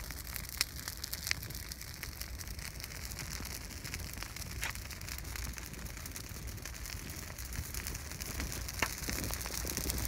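Brush and limb pile burning in a pit, a steady crackling hiss with a few sharp pops scattered through it.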